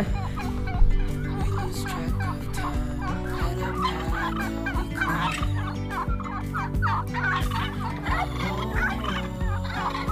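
Domestic turkeys gobbling and calling over and over, a dense run of short rising and falling calls.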